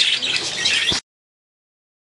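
Several budgerigars chattering with rapid high chirps and squawks, cut off abruptly about a second in, then silence.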